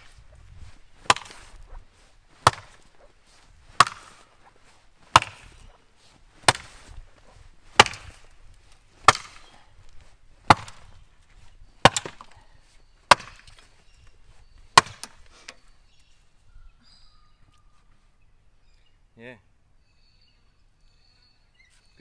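An old Keech racing axe chopping into a large wooden stump: about a dozen sharp strikes, roughly one every 1.3 seconds, stopping about 15 seconds in.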